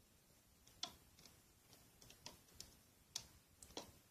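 Faint, irregular clicking, about eight clicks in all, of a Rainbow Loom hook and rubber bands working against the plastic pins of the loom as bands are picked up and looped.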